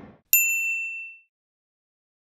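A single bright, bell-like ding from a logo sound effect. It is struck about a third of a second in and rings out within a second. The tail of a whoosh fades just before it.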